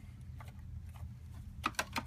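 Hard plastic parts of a Dyson DC07 upright clicking and knocking together as its cleaner head is lined up on the base: a few sharp clicks close together near the end, over a steady low hum.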